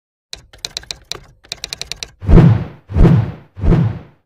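Intro sound effects: a quick run of typewriter-style key clicks, then three heavy thuds about two-thirds of a second apart.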